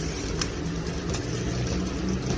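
Metal ladle stirring a thick liquid food in a metal pot: liquid sloshing over a steady low rumble, with a couple of short sharp taps of the ladle against the pot.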